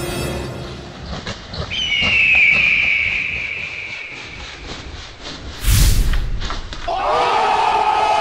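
Edited-in sound effects: a long, falling high screech about two seconds in, a heavy thud just before the six-second mark, then a crowd of people cheering and shouting from about seven seconds.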